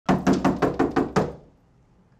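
A fist knocking rapidly on a door: seven quick knocks in just over a second, then it stops.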